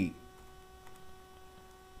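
Faint steady electrical hum with several thin steady tones, mains hum picked up by the recording setup.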